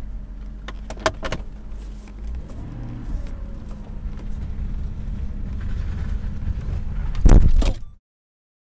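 Car engine running at low revs, heard from inside the cabin as a steady low rumble, with a couple of sharp clicks about a second in. A short, much louder burst comes near the end.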